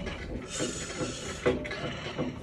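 Knife sawing back and forth through a large loaf of bread, about two strokes a second.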